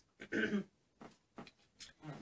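A woman clearing her throat once, hoarse from losing her voice, followed by a few faint clicks.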